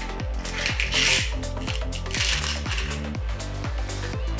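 Electronic background music with a steady beat, over which a handful of small metal screws and washers clatter onto a tabletop in two bursts, starting about half a second and two seconds in.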